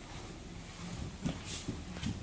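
Low gym room noise with a few soft knocks and rustles of people moving on the mats, about a second in.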